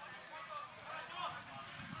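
Football match heard from pitch-side: players' faint shouts and calls across the field, with a ball being kicked.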